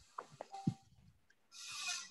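Faint, broken-up sound over a video-call line, too quiet to make out: a few short clicks and blips, then a breathy hiss about one and a half seconds in.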